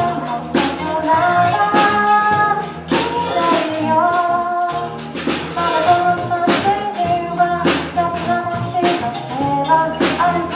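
A live pop band playing: a woman sings the melody over drums, bass, guitar and electric piano, with the drum hits keeping a steady beat.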